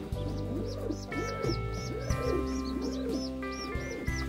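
Soft background music with held chords, over which pigeon squabs being fed beak-to-beak by their parents give rapid, high squeaky begging peeps, about four a second, with lower rising-and-falling calls between them.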